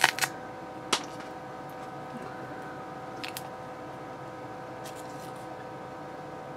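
Laser-cut clear acrylic pieces being snapped and pressed out of the sheet by hand: a few sharp plastic clicks, the clearest about a second in, over a steady electrical hum.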